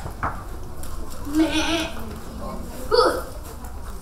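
A girl imitating animal calls with her voice. There is a short click early on, then a pitched call about a second and a half in and another shorter one at about three seconds.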